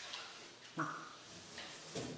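A brief high-pitched vocal cry, under half a second long, about three-quarters of a second in.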